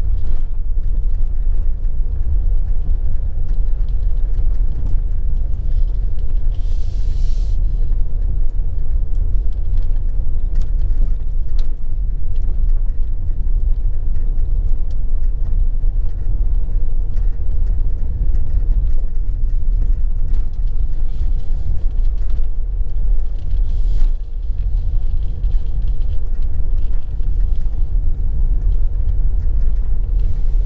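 Steady low rumble of a vehicle driving along a road: engine, tyre and wind noise. A brief hiss comes about seven seconds in, and a single knock about twenty-four seconds in.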